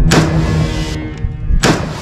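Two loud sudden blasts about a second and a half apart, each trailing off, over a low steady music drone.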